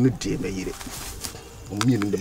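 A man's voice talking in short phrases, dropping away for about a second in the middle before talking starts again near the end.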